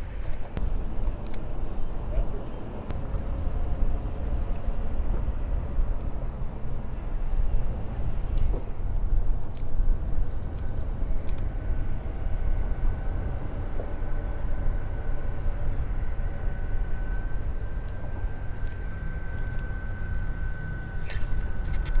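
Steady low rumble of road traffic on a bridge overhead, with a faint steady whine that comes in about halfway through and a few light ticks.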